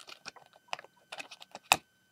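Light plastic clicks and taps of Lego minifigures being pressed onto the studs of a small brick stand, with one sharper click near the end.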